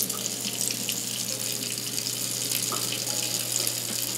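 Kitchen tap running steadily into the sink while the garbage disposal runs underneath with a low steady hum, during its foaming cleaning-packet cycle.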